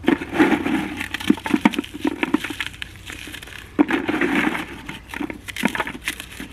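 Pieces of lump charcoal being crushed by hand into a bucket: a crunching, crackling run of many small irregular cracks as the brittle charcoal breaks up.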